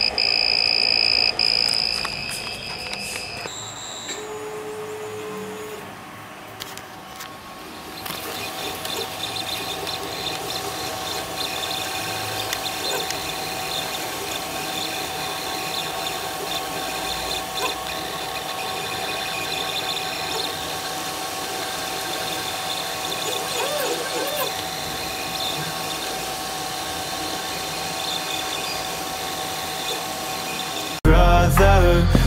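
3D printer's buzzer sounding one steady high beep for the first three or four seconds while the printer is paused at a filament-change prompt. From about eight seconds in, the printer's stepper motors and cooling fans run steadily with a faint whine as the print carries on.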